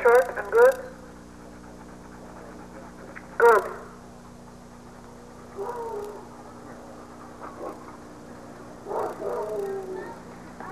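Rottweiler barking in short bursts: a quick run of three loud barks right at the start, then a single bark about three and a half seconds in.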